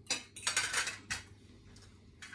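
Cutlery clinking and scraping against plates during a meal: a quick run of clinks and scrapes in the first second, then a couple of single clinks.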